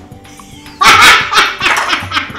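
A dog barking several times in quick succession, starting abruptly a little under a second in and loud, with music playing along.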